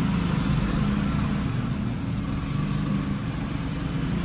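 Steady road traffic noise from passing vehicles: a continuous low rumble of engines.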